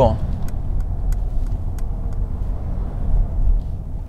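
Steady low road and tyre rumble inside the cabin of a 2021 Mercedes-Benz S580 driving slowly through town, with a few faint light clicks.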